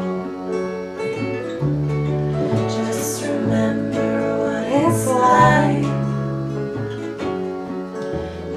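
A folk-pop band playing an instrumental passage: acoustic guitar strumming over an electric bass that moves to a new note about once a second.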